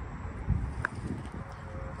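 A few soft footsteps on asphalt over a low rumble of hand-held camera handling, with one short click just under a second in.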